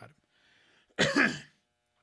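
A man coughs once, a short loud cough about a second in.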